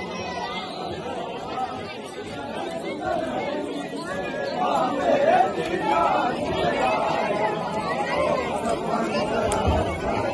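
A large crowd of men talking and calling out over one another, growing louder a few seconds in.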